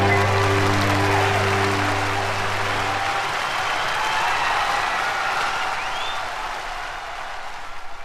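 A live band's held final chord rings out and stops about three seconds in, under arena audience applause and cheering that slowly fades, with a couple of short rising whistles.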